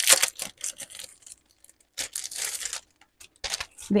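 Sheets of paper and cardstock handled and slid across a table: short bursts of rustling and scraping with brief quiet gaps between.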